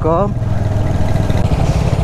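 Royal Enfield Hunter 350's single-cylinder engine running at low revs with a steady low beat as the motorcycle rolls slowly, heard from the rider's seat.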